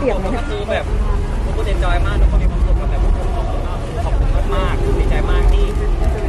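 Voices talking over a steady low rumble.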